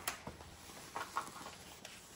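Faint rustling and a few light clicks and taps from a rolled diamond painting canvas and its white paper wrapper being turned and unrolled by hand, with one sharper click at the start.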